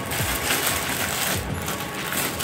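Thin clear plastic bag crinkling and rustling in the hands as it is pulled open to unwrap a waterproof phone pouch.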